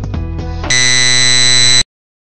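Background music, then a loud, steady electronic buzz that lasts about a second and cuts off suddenly at the end.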